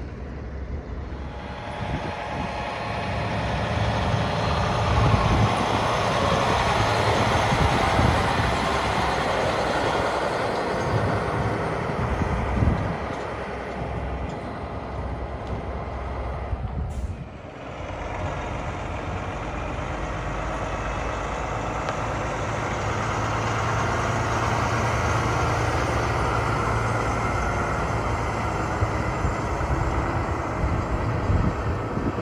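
Peterbilt 389 semi truck's diesel engine running as the truck drives slowly with its flatbed trailer, growing louder over the first several seconds. The sound breaks off briefly about 17 seconds in, then the engine is heard again, building steadily.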